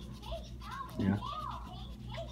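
Quiet speech: a child's soft, high-pitched voice and a brief "yeah" about a second in.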